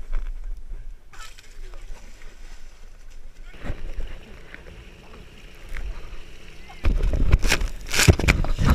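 A body sliding face-first down a wet plastic-sheet water slide, water sloshing and hissing under a chest-mounted camera. About seven seconds in it gets much louder, with hard splashing and spray as the slider hits the water.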